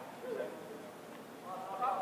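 Indistinct talk and calls from players and people in a school gym, louder near the end.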